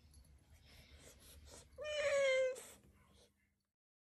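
A domestic cat meowing once about two seconds in: a single long call, falling slightly in pitch.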